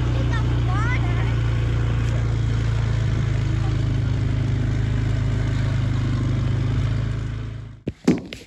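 Small engine of an ATV running at a steady speed, a loud even hum that does not change pitch and fades out near the end.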